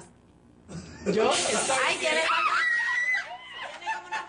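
After a moment of quiet, women scream and shriek with laughter for about two seconds, ending on one held high shriek.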